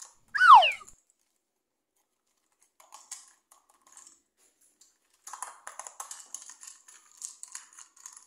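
A short falling whistle about half a second in, the loudest sound, then plastic clicking and rattling as a plastic toy train is handled and turned over, denser from about five seconds in.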